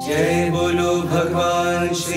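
Chanting of a mantra over a steady, sustained low drone.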